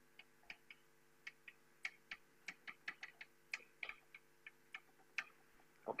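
Chalk clicking and tapping on a blackboard while a word is written in capital letters: a faint, irregular string of short, sharp ticks, about two or three a second.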